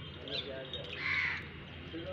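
A single harsh, hoarse animal call about a second in, lasting about half a second, over faint voices and small birds chirping.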